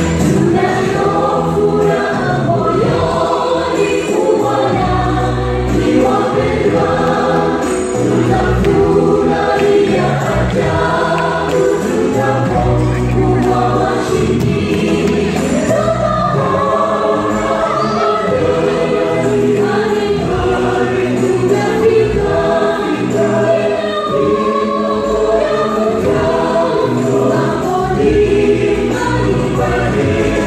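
Gospel choir singing live and amplified through PA speakers, many voices together over sustained low accompaniment, continuous and loud.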